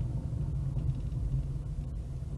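Steady low rumble of a car driving slowly, its engine and road noise heard from inside the cabin.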